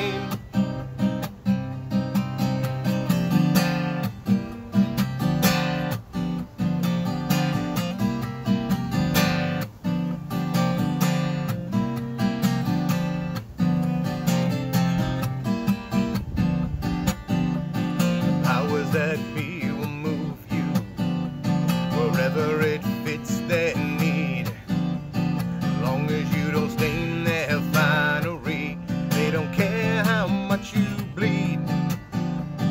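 Solo Luna acoustic guitar strummed and picked in a steady rhythm: an instrumental break in a country-style song, with no singing.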